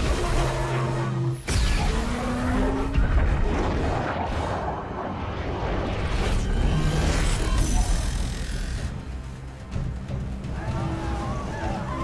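Film soundtrack: dramatic score music under loud rushing, crashing water and booming impacts as a giant water creature surges up. A sharp crash comes about a second and a half in.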